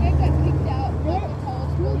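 Steady low rumble of a vehicle running, heard from inside the cabin, with faint voices over it.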